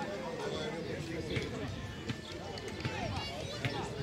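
Overlapping voices of footballers and spectators calling out across the pitch, with a couple of short sharp knocks.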